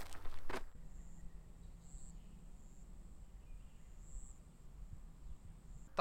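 Faint rural field ambience: a steady, thin, high insect trill, brighter in a few short pulses, over a low hum.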